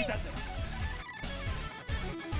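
Electric guitar shredding in an anime soundtrack, with other sounds of the scene underneath.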